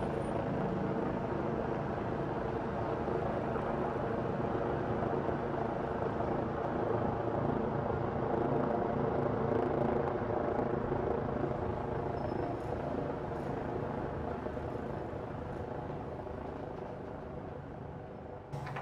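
A train passing: a steady rumble with a low hum that grows a little louder toward the middle and then slowly fades away.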